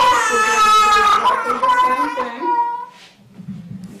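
Infant crying hard as a nasopharyngeal swab is inserted into the nose: one long, loud wail over the first two seconds or so, then dying down near the end.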